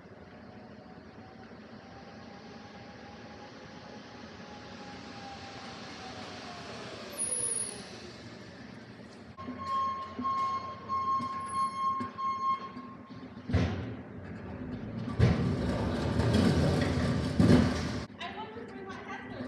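Hand pallet jack hauling a heavy pallet of tile over a box truck's floor and the dock plate: a thin whine for a few seconds near the middle, a sharp clank, then loud rumbling and rattling of the steel wheels in the last few seconds.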